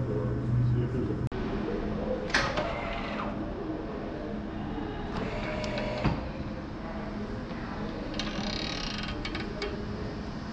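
Exhibit locker door being pushed open and handled by hand, with a brief scrape, a sharp click and small knocks and rustles. A low steady hum cuts off about a second in.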